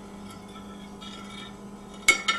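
Steady low hum over quiet background noise: room tone with no distinct event.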